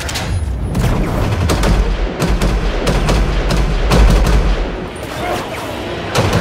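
Rapid, irregular gunfire from a film gunfight: many sharp shots overlapping, over a heavy low booming bed, easing off briefly about five seconds in.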